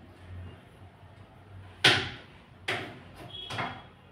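Kitchen knife knocking down through fruit onto a hard surface as it is cut: three sharp knocks about a second apart, the first the loudest.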